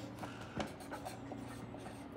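Bristle brush strokes on an oil-painted canvas: a run of short, scratchy strokes as the paint is blended, with a sharper tick about half a second in.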